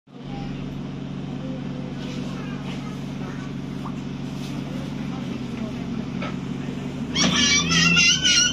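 Diesel engine of a 2012 ADL Enviro 400 double-decker bus droning steadily, heard from inside the passenger saloon while the bus drives. About seven seconds in, a toddler lets out a loud, high-pitched squeal that wavers in pitch.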